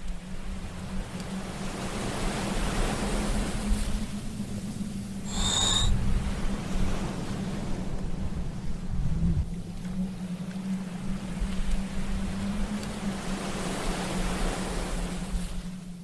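Rushing ocean surf ambience that swells and eases, with a low steady hum beneath it and a brief high chirp about five and a half seconds in.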